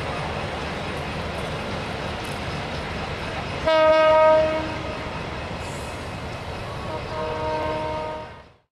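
Train horn sounding twice over the steady rumble of a passenger train running along a station platform: a loud blast of about a second, a little before halfway, then a softer, longer blast near the end.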